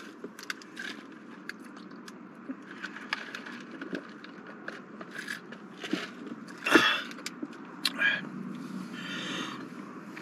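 Sipping through a straw from a plastic fountain-drink cup, with small clicks of ice and lid. About seven seconds in comes a loud, breathy vocal sound, followed by a second one about a second later.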